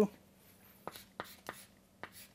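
Chalk writing on a chalkboard: a few short taps and scrapes of the chalk, the sharpest about a second in and another half a second later.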